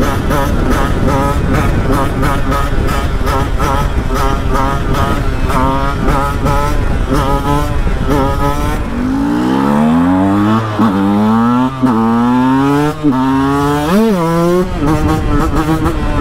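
Two-stroke 125 cc single-cylinder engine of a KTM 125 EXC supermoto running at road speed, with wind rushing over the microphone. About nine seconds in, the wind noise drops and the engine rises in pitch again and again, with short dips between the climbs and a quick blip of the throttle near the end.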